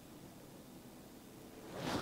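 Faint handling noise of hands pushing a servo-lead plug together on a bench, mostly quiet, with a short louder rush of noise near the end.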